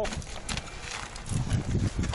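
Mountain bike rattling and knocking as it rides over a rocky trail: irregular knocks of tyres and frame on rock, with a cluster of low thumps about a second and a half in.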